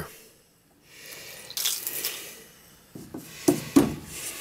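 Handling noise: a soft rustle about one and a half seconds in, then three sharp knocks near the end, the last two the loudest.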